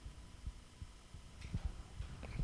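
Quiet pause with only faint, scattered low thumps and a low hum, picked up by a handheld microphone.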